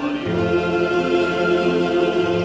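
Male singer holding a sung line over a tamburica orchestra, with plucked tamburicas and accordion sustaining the chord beneath him.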